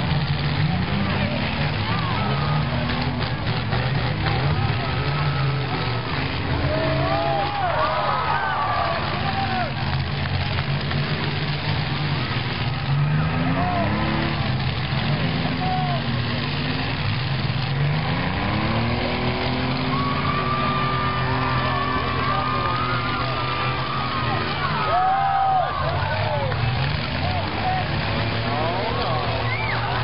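Demolition derby cars' engines running and revving repeatedly as they push against each other, with crowd voices and shouts over them.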